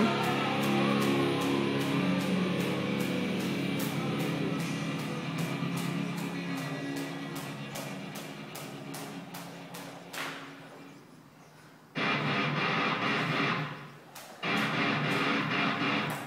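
Background music with guitar and a steady high tick about three times a second, fading away over about ten seconds. After a short quiet dip, a loud sound starts abruptly about twelve seconds in, breaks off briefly, and comes back near the end.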